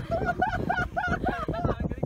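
A person laughing close by, a quick run of short, evenly repeated syllables, about five a second.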